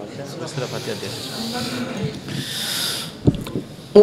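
Two long breathy rushes of air close to a stage microphone, each about a second long, like a reciter drawing breath. Faint murmur underneath, and a single short thump on the microphone a little before the end.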